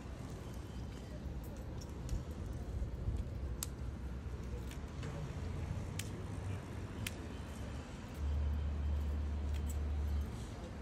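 Street ambience: a low rumble of road traffic, mixed with handling noise from a phone rubbing against netting and fabric, and a few sharp clicks. A heavier, steady low rumble comes in about eight seconds in.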